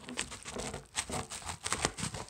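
Scissors cutting open a paper mailer envelope: a quick, irregular run of crisp snips and paper crinkling, loudest near the end.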